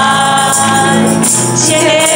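Congregation and worship leaders singing a Taiwanese hymn together to musical accompaniment, holding long notes.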